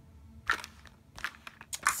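Plastic makeup tubes and compacts clicking and knocking together as they are picked through by hand: a few short sharp clicks, the first about half a second in.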